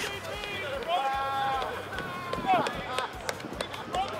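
Men's voices shouting and calling out on an outdoor field, with a few short sharp sounds near the end.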